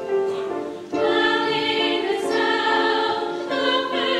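High school mixed chorus singing sustained chords, with a brief drop just before a louder, fuller entry about a second in.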